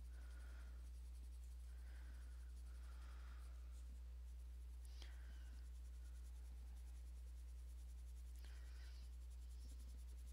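Coloured pencil rubbing lightly on paper in a few soft, scattered shading strokes, blending colour over a petal. A steady low electrical hum runs underneath.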